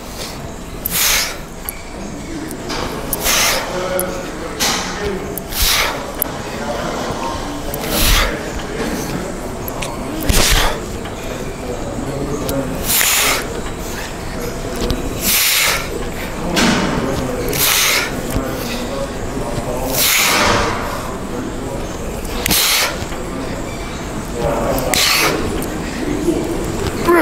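A man breathing out hard, one short forceful breath with each rep of a cable lat pulldown, about every two to three seconds, over background music.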